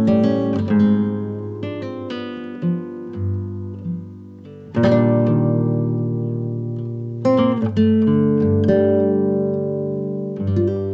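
Acoustic guitar music: picked notes and chords ringing out and fading, with a fresh strummed chord about halfway through and another a couple of seconds later.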